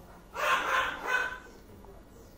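A dog barking twice, a longer bark followed by a shorter one.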